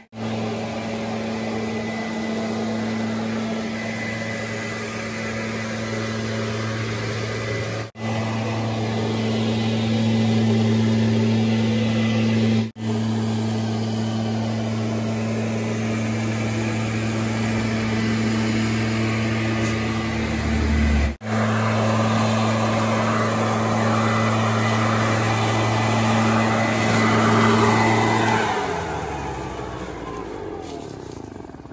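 Gas backpack leaf blower engine running steadily at high speed, a constant drone broken by three brief dropouts; near the end its pitch falls away as it winds down.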